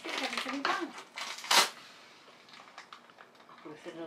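Knife puncturing a vacuum-sealed plastic bag: one brief, sharp pop of air rushing in about a second and a half in, with soft plastic rustling around it.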